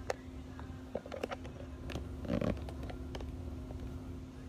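Handling noise from a handheld phone: a few light clicks and a brief low rustle about two and a half seconds in, over a steady low hum.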